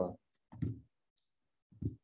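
A pause in speech: a brief high click and two short, low vocal sounds, with complete silence between them.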